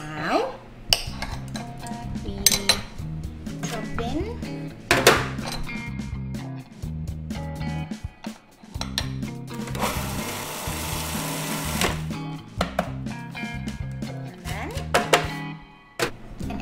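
Background music, with a food processor running for about two seconds, about ten seconds in, cutting butter into ground almonds. A few sharp knocks come earlier.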